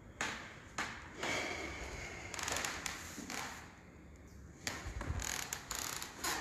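Footsteps on a refinished hardwood floor: scattered sharp taps, with rustling noise between them.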